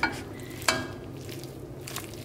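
A utensil stirring thick, cheesy macaroni in a stainless steel saucepan, with wet mixing noise. Two sharp scrapes of the utensil against the pot, the louder about two-thirds of a second in.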